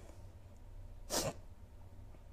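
A single quick, sharp breath from a woman, picked up close by a lapel microphone about a second in, over a faint low hum.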